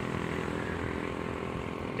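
A vehicle engine idling steadily, a constant low hum with no change in pitch.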